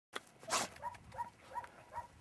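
English setter giving four short, high yelps in quick succession, about three a second, while excited over a game bird. A loud rough burst comes just before them, about half a second in.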